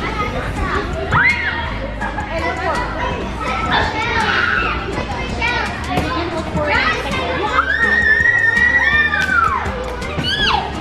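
Young girls' voices chattering and calling out across a large gym, with one long, high-pitched held call or squeal near the end.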